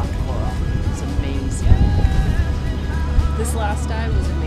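A woman talking over background music, with a steady low rumble underneath that grows stronger near the end.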